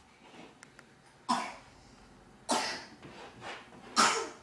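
Three sharp coughs, each sudden and dying away quickly, a little over a second apart.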